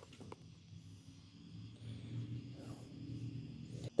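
Faint low steady hum, with a couple of small clicks just at the start.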